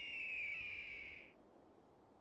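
A faint, long, high whistling tone that falls slightly in pitch and fades out a little past halfway, over a faint hiss.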